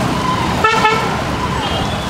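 Paratha sizzling in butter on a large flat tawa, a steady sizzle under busy street noise. A vehicle horn toots once, briefly, just over half a second in, and a repeating tone that dips in pitch and comes back about every two-thirds of a second runs until near the end.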